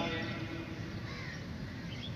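Crows cawing faintly in the background, with one arched call about a second in.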